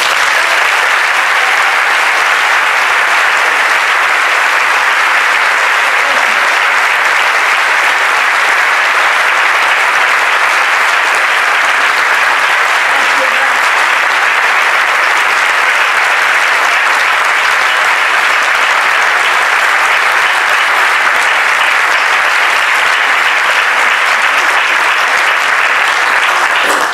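A large audience applauding, dense and steady for the whole stretch.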